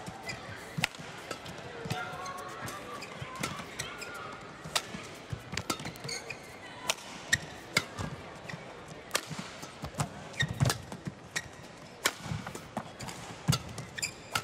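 Badminton rally: sharp racket strikes on the shuttlecock, about one a second, over the low murmur of an arena crowd.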